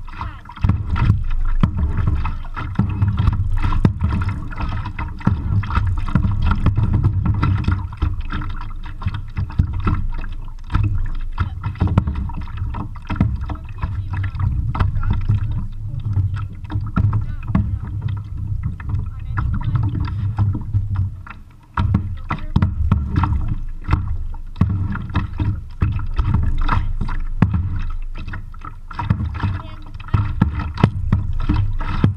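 Kayak paddling with a double-bladed paddle, picked up by a chest-strapped camera: a heavy low rumble from the mic rubbing and moving with each stroke, full of frequent knocks and bumps, easing for a moment about 22 seconds in.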